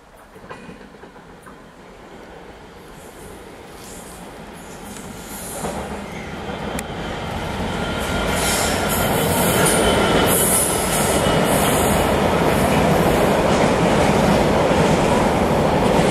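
Class 66 diesel-electric locomotive with a two-stroke engine hauling an intermodal container freight train through a station. It grows steadily louder over the first ten seconds as it approaches and passes. The wagons then go by with a loud, steady rumble and wheel-on-rail noise.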